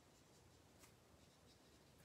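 Near silence, with the faint rubbing of a felt-tipped alcohol blending marker colouring on cardstock and one soft tick a little under a second in.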